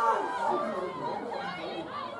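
Several voices of rugby players and touchline onlookers calling and shouting over one another as a maul forms and goes to ground, with no single clear speaker.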